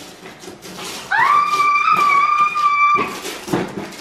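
Paper party blower blown in one steady, reedy note for about two seconds, rising slightly as it starts and cutting off suddenly.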